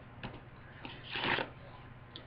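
Rustling of a large sheet sign being picked up and handled, with a few light clicks and one louder rustle about a second in.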